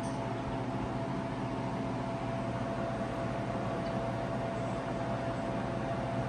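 Steady machine hum from a home freeze dryer, with a faint steady high whine over it.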